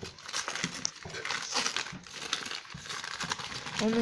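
Glossy printed leaflet paper crinkling and rustling in irregular crackles as hands unfold a small wrapped packet.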